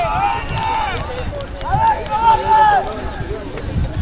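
Men's raised voices shouting calls from the field, in two bursts: one at the start and a longer one about halfway through, over a low outdoor rumble.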